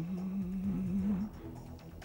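A man humming one long, level note for a little over a second, then trailing off softly.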